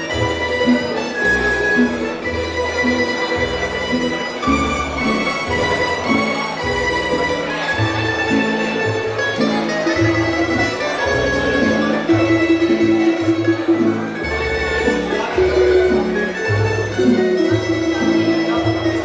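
Live tamburica band playing a Bunjevac folk dance tune: plucked string melody over a steady, rhythmic bass line.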